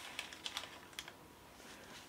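A few faint, light clicks and taps, mostly in the first second, as small pouches are set down and straightened on a shelf.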